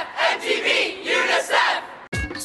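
A crowd of young people shouting together in unison, a chant of several rhythmic syllables that stops just before the end.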